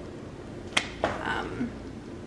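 Small metal earring's clasp clicking shut as it is fastened in the ear: one sharp click, then a second, softer click a quarter of a second later.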